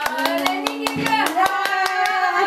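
A woman clapping her hands in a quick run, about seven claps a second, with her own drawn-out voice sounding over the claps.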